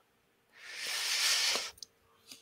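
A person's long hissing exhale into a microphone, swelling over about a second and then cutting off, with a faint steady hum underneath.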